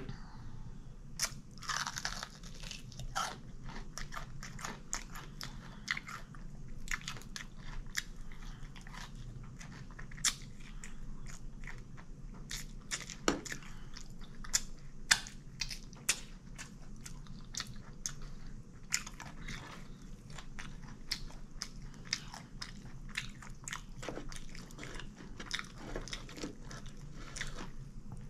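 Close-up chewing and biting of fried chicken, with crunches and wet mouth clicks at irregular moments, over a steady low hum.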